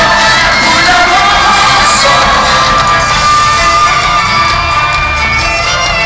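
A live band playing loudly through a concert sound system, heard from within the audience, with the crowd cheering and shouting over the music.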